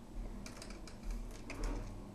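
A handful of light clicks and taps, in two small clusters about half a second and one and a half seconds in, over a low rumble: small objects being handled on a workbench.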